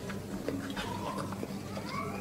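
Fingers mixing biryani rice on a plate, soft small clicks and squishes over a steady low hum. Near the end a drawn-out tonal call starts to rise.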